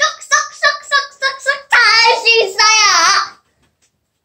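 A young girl's voice singing: a run of short quick syllables, then two long drawn-out notes that waver in pitch, stopping shortly before the end.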